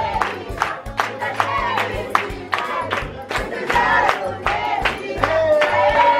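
A group of people singing a birthday song together, with rhythmic hand-clapping at about two to three claps a second; a long held note is sung near the end.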